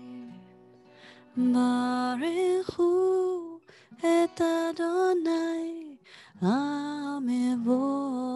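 A woman singing a slow, sustained melody solo into a close microphone, in three long phrases after a quiet opening second, each phrase rising into its first note.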